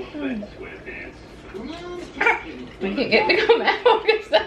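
People's voices in a small room: a few drawn-out, sliding vocal sounds, then livelier overlapping talk in the last two seconds.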